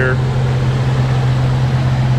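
1969 Dodge Dart GT's 318 V8 idling with a steady low drone.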